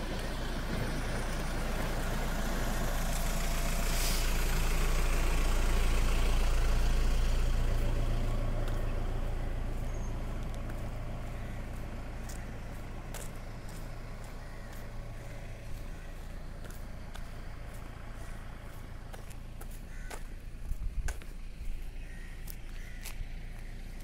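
A white SUV drives past at low speed, its engine hum rising to a peak about six or seven seconds in and then fading away. Faint ticks and a few small knocks come near the end.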